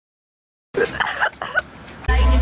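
Total silence, then about three-quarters of a second in, a person coughing a few short times, picked up by a phone microphone over low background noise.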